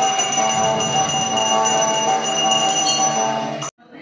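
A brass puja hand bell rung continuously, its ringing tones overlapping into a steady shimmer, as at an aarti. The ringing cuts off suddenly near the end.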